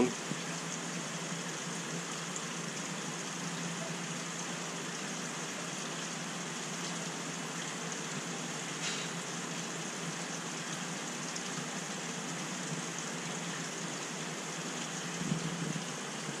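Large aquarium's water circulation running: a steady hiss and trickle of moving water.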